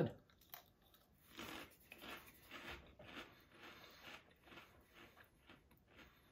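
Mouth chewing a crunchy puffed potato snack, a Lay's Layers Three Cheese bite: soft crunches about twice a second that fade out near the end.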